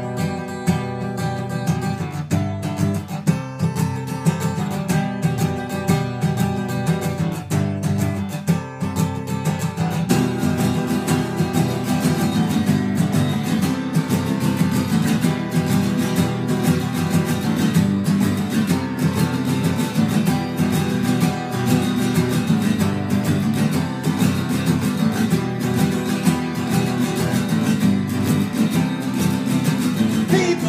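Acoustic guitars playing a tune together, strummed and picked; the playing grows fuller about ten seconds in.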